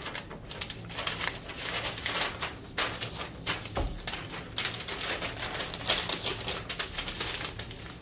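Tyvek USPS Priority Mail envelope rustling and crinkling as a tight-fitting stack of comic books is worked into it, with irregular taps and a soft thump about four seconds in.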